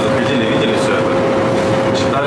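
Indistinct conversation in a shop, over a steady humming tone and a constant noisy background.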